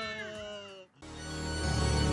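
The fading end of a long, drawn-out vocal cry with slowly falling, wavering pitch. A brief drop-out follows just before the first second is over, then background music with a heavy bass starts and swells.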